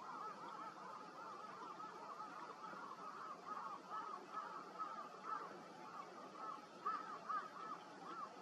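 A flock of waterfowl honking: a steady chorus of short, overlapping calls several times a second, with a few louder calls near the end.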